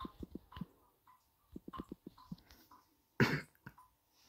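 Quick taps of typing on a phone's touchscreen keyboard, in two short runs, then a single cough a little after three seconds in, the loudest sound here.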